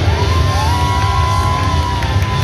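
Live band with acoustic guitars and a drum kit playing, two long steady high notes held over it, and the audience cheering.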